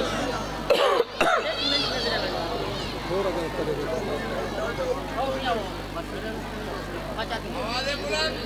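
A man coughing and clearing his throat close to a microphone, in a few sharp bursts about a second in, over background voices and a steady low electrical hum.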